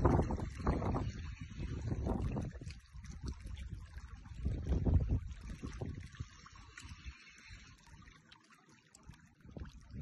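Wind buffeting the microphone in irregular low gusts, strongest at the start and again about five seconds in, then easing off near the end.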